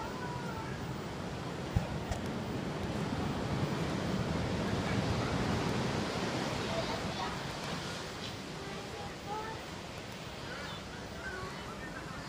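Ocean surf washing on a beach, swelling to a peak in the middle and easing off, with wind on the microphone. A single sharp click just before two seconds in.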